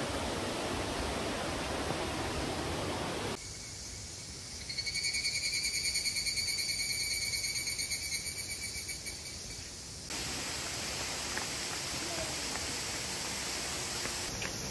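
Steady rushing of falling water. About four seconds in, it gives way to a singing insect's fast, pulsing high trill that fades out over several seconds. About ten seconds in, the steady rushing returns.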